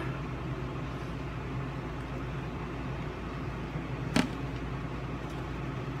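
Steady low mechanical hum of an indoor appliance, with one short sharp click about four seconds in.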